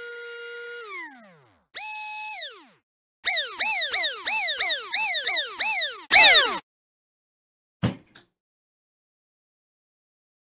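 Intro sound effect made of whines: one swells, holds and winds down; a higher one follows; then comes a quick run of rising-and-falling whines about three a second. A loud noisy burst ends the run just after six seconds, and a single short thud follows near eight seconds.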